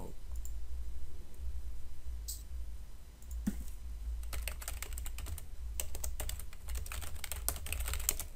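Typing on a computer keyboard: a few scattered key clicks at first, then a quick, dense run of keystrokes from about halfway through as a search is typed in.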